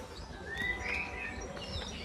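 Birds calling, with one warbling call that rises and falls about half a second in, over faint background noise.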